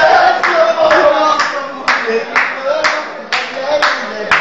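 Hands clapping in a steady rhythm, about two claps a second, as people clap along in time, with singing voices underneath.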